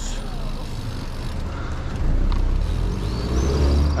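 Outdoor riding noise from a camera on a moving bicycle: low wind rumble and road noise that swell about halfway through, with a car driving close by. A brief high-pitched chirp comes near the end.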